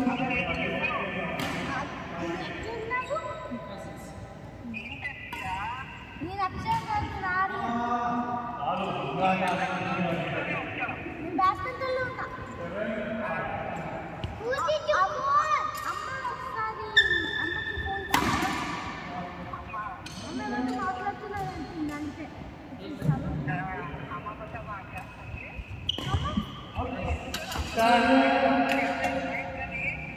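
People talking on and off, with short sharp knocks scattered through: badminton rackets striking a shuttlecock.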